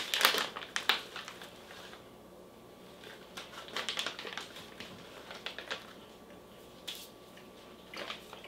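Plastic snack pouch crinkling and crackling as it is handled and opened, densest in the first second, then in short scattered bursts.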